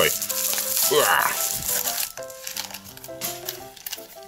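Thin plastic mailer bag being torn open and crinkled by hand, a noisy crackle for the first couple of seconds, over background music.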